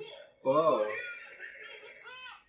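A man's short chuckle about half a second in, over speech.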